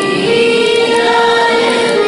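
A school choir singing a qawwali in chorus, the voices holding one long note through most of the moment.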